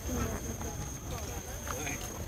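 People talking indistinctly, with a constant low rumble of handling noise as the camera is swung around.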